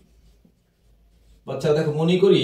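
Marker pen writing on a whiteboard, faint, for the first second and a half; then a man starts speaking.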